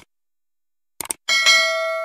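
A few short clicks, then about a second in a bell-like ding that strikes suddenly and rings on as several steady tones, slowly fading.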